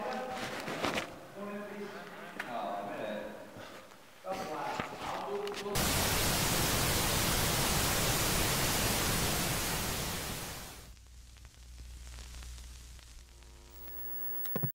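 TV-static noise effect of an outro transition: a loud, even hiss that cuts in abruptly about six seconds in, lasts about five seconds, then gives way to a quieter low hum. Before it, low voices are heard.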